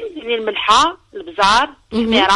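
Speech only: women talking in conversation, partly heard over a telephone line.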